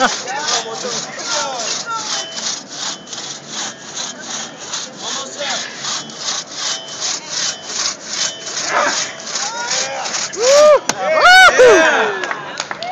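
Two-man crosscut saw cutting through a log in fast, even back-and-forth strokes. Near the end, loud shouts from onlookers join in over the sawing.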